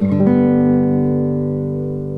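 Nylon-string classical guitar played fingerstyle: a low chord plucked at the start, with another note added a moment later, then left to ring and slowly fade.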